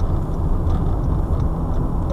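Steady low rumble of engine and road noise inside a car's cabin as it drives slowly around a roundabout, picking up speed gently.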